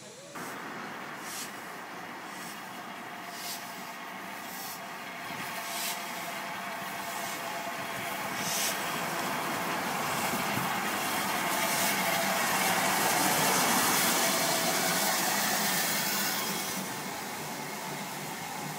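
LMS Black Five steam locomotive 45231, a 4-6-0, running beneath the bridge. The rumble and steam hiss build to their loudest about two-thirds of the way in, then ease near the end.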